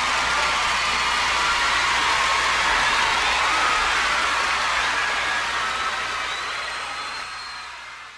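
Large concert audience applauding and cheering, with a few voices or whistles standing out. The sound fades out gradually over the last couple of seconds.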